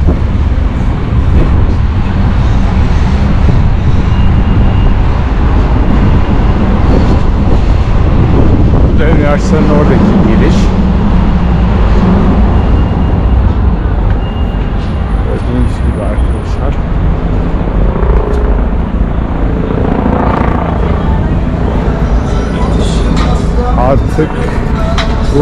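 Busy street ambience on a walking camera: a steady low rumble of road traffic, with people's voices passing about nine seconds in and again near the end.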